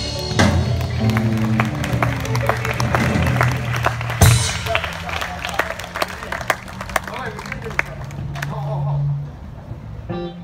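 Live blues band ringing out its closing notes, with held low bass and guitar notes and one loud crash about four seconds in, while the audience claps in scattered, separate claps. The held notes stop about nine seconds in.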